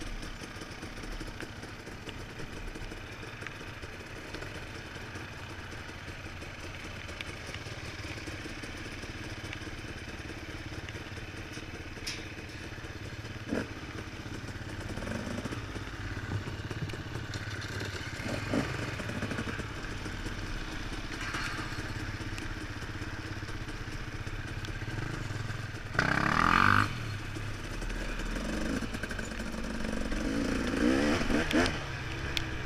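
Several enduro trail bikes ticking over together, a steady low engine drone with the odd clatter. A brief loud burst comes near the end.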